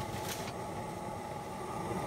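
Coleman lantern hissing steadily, with a single sharp click at the start.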